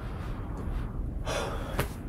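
A man's breathy exhales or gasps, two short ones about half a second and a second and a half in, with a brief click just before the end.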